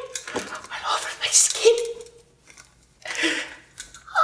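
A man's wordless vocal sounds: several short breathy, hissing bursts, with a pause of about a second in the middle.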